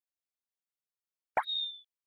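Silence, then near the end a short high-pitched blip: a quick upward glide that settles into a steady whistle-like tone for about half a second.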